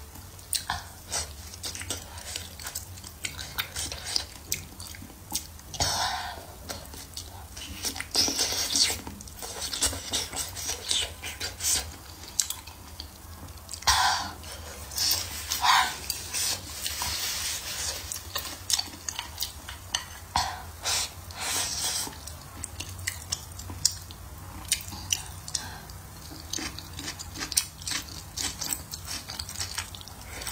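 Close-miked eating: chewing and biting braised chicken, eggplant and green peppers with wet mouth smacks, and chopsticks clicking against the plate, as many short irregular clicks.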